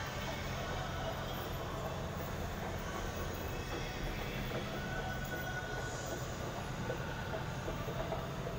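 Escalator running while being ridden down: a steady low mechanical rumble and hum.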